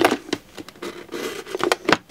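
Razor blade cutting around a thin plastic 2-liter soda bottle, the plastic crackling in quick, irregular clicks, with a sharper click at the start and another near the end.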